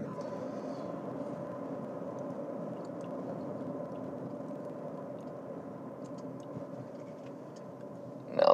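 Faint, steady road noise inside the cabin of a moving 2024 Toyota RAV4, with a thin, steady hum and a few faint ticks.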